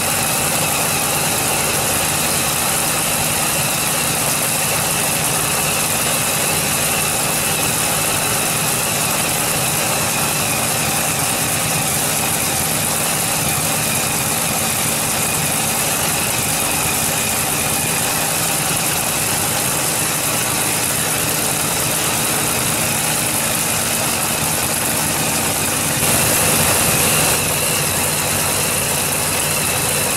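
Supercharged V8 drag-race engine idling steadily during a pit warm-up, turning briefly louder for about a second near the end.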